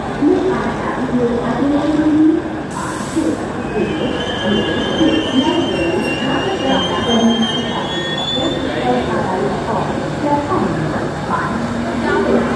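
Shatabdi Express train squealing high-pitched from about four seconds in until about nine seconds, with a brief hiss of air about three seconds in, over the chatter of people on the platform.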